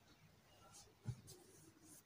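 Near silence with faint scratchy rustling and one soft, low thump about a second in.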